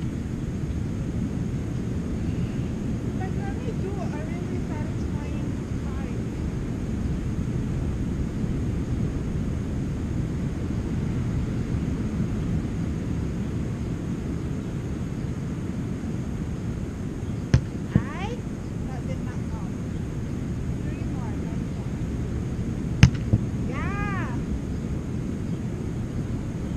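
Steady low wind rumble buffeting the camera microphone on the beach, with faint distant voices calling. Two pairs of sharp knocks come late on, each followed by a short call.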